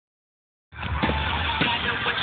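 Fireworks display starting suddenly under a second in: a low boom and a few sharp pops over dense crowd noise, recorded on a phone.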